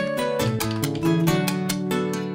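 Gaita music: a Roland XP-80 synthesizer keyboard holding chords and bass under quick, even strummed and percussive strokes, an instrumental passage.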